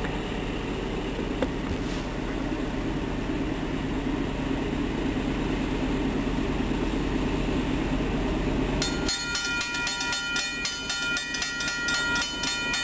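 BNSF diesel locomotive approaching with a steady, slowly building rumble. About nine seconds in, a bell starts ringing rapidly.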